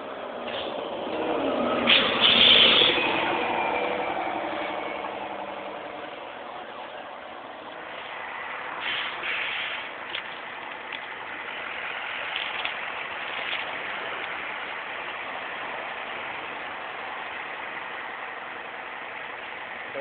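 A large vehicle passes close by on the highway, loudest about two seconds in, its engine note falling as it goes past. Steady engine and traffic noise follows, with a few short hissing bursts around nine to ten seconds in.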